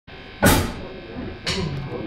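Drum kit struck twice about a second apart, the first hit the louder, with voices talking underneath.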